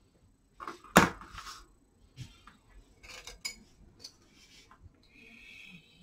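Painting tools being handled on a table: a sharp knock about a second in, then scattered light clicks, and near the end a paintbrush being swished in a glass water jar.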